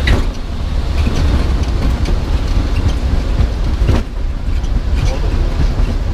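C42 Ikarus ultralight's engine and propeller running as the aircraft rolls along the runway, a loud steady low rumble. There is a sharp knock right at the start and another about four seconds in.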